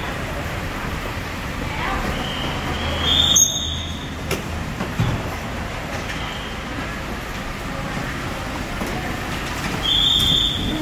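Steady low rumble of vehicles idling in a covered airport pick-up bay, with a few short high-pitched tones, the loudest about three seconds in, over faint voices.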